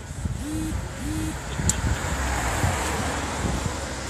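A road vehicle going past, its noise swelling over a couple of seconds and then easing, over a steady low rumble.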